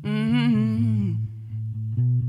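A man's voice sings a wordless held note with vibrato, falling in pitch and fading after about a second. Under it, electric guitar and a low bass line keep playing steady plucked notes.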